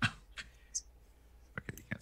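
A few short, light clicks and taps, with a brief high hiss in between.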